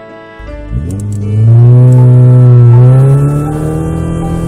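Cartoon car-engine sound effect as a pickup truck drives off: the engine revs up, rising in pitch, loudest through the middle, and eases off near the end. Light background music underneath.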